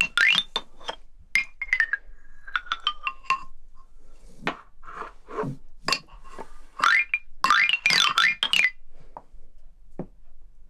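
Toy xylophone struck by a baby with a mallet: irregular single ringing notes and a few quick runs up and down the bars, the loudest run about seven to nine seconds in.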